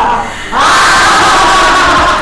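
A woman's loud, long laughing cry held on one pitch. It breaks off briefly, then comes back about half a second in as one long held cry.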